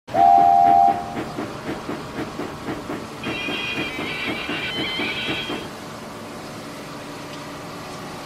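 Steam locomotive whistle: a short, loud two-note blast, then steady chuffing at about four puffs a second. A higher whistle with several notes sounds over the puffing for a couple of seconds, and the chuffing stops a little later.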